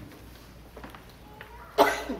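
A person coughing once, loud and sudden, near the end, against the quiet of a large room.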